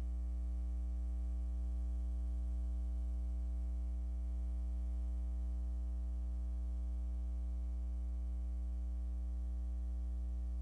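Steady electrical mains hum with a buzzy edge and nothing else. The voice has cut out, leaving only the hum of the sound system's line.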